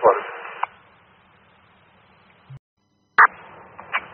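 Fire department two-way radio heard on a scanner: a transmission ends on its last word and trails off into a fading hiss of static. The squelch closes with a click, and about three seconds in the next transmission keys up with a sharp burst followed by open-channel hiss.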